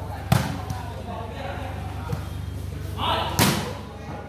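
A volleyball being struck by hand in a rally: two sharp hits, one just after the start and one about three and a half seconds in, with a few lighter knocks between.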